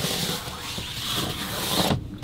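A hand rubbing and smoothing a quilted fabric blackout window cover against a van window, a steady scraping rustle that cuts off near the end.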